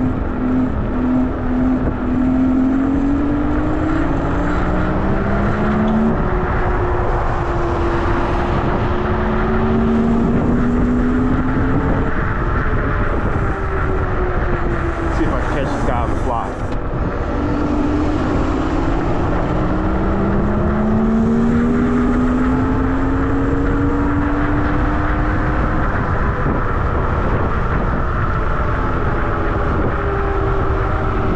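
Nanrobot LS7+ electric scooter's motors whining while riding, the pitch climbing as it speeds up and falling back as it slows about halfway through, then climbing again. Heavy wind rush on the microphone throughout.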